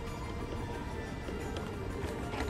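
Background music with a steady tone, over the power wheelchair rolling across paving slabs.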